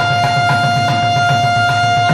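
Alto saxophone holding one long steady note in a Carnatic rendition of raga Bilahari, over a fast, repeating low drum pattern.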